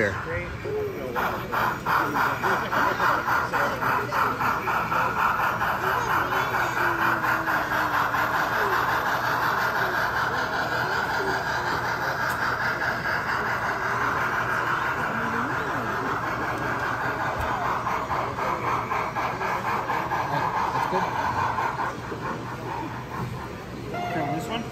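LEGO model train running past on LEGO track, its motor and wheels making a rapid, even clicking whir that starts about a second in and fades out near the end, over a hum of crowd chatter.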